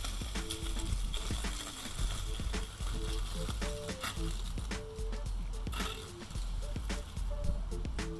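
Background music: a melody of short notes changing pitch over a steady low bass.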